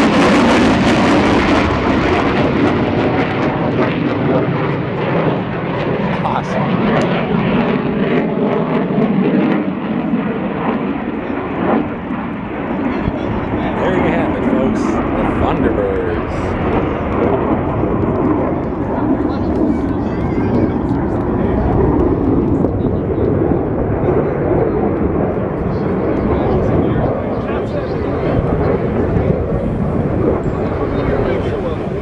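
Jet engine roar of USAF Thunderbirds F-16 fighters flying overhead and away. It is loudest and sharpest at the start, loses its hiss within about two seconds, and then lingers as a long, slowly fading rumble with crowd voices mixed in.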